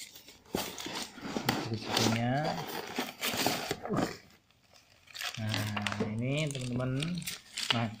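Plastic packaging crinkling and tearing as a boxed power drill is unwrapped by hand, mostly in the first half. A voice speaks during the later part.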